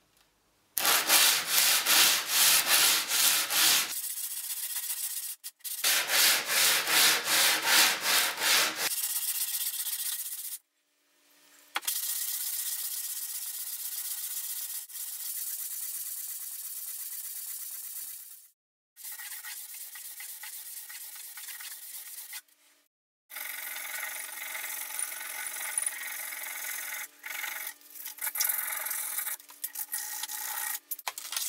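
Cast-iron parts of a Stanley Bailey No. 4 plane rubbed back and forth on an abrasive strip laid flat on a board, flattening them. The scratchy rasping strokes come in several separate runs: the first two are loud, at about three strokes a second, and the later ones are steadier.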